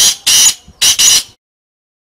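Black francolin (kala teetar) calling: a quick run of four harsh, high-pitched notes, the last two nearly run together, ending about a second and a half in.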